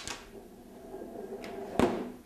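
A solid disc and a steel ring rolling down a ramp. A click on release is followed by a steady rolling rumble, then a loud knock near the end as one of them reaches the bottom.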